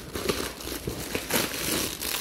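Plastic packaging crinkling and rustling unevenly as it is handled and picked up.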